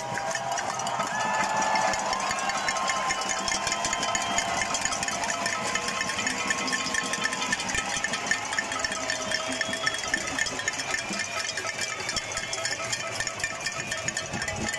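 Cacerolazo: a large crowd banging pots and pans in a rapid, continuous metallic clatter, with long drawn-out shouts from the crowd over it.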